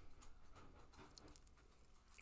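Near silence: room tone with a few faint, light ticks.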